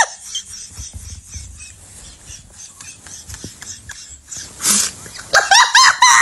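A woman laughing hard: quiet at first, then loud, high-pitched bursts of rapid laughter near the end.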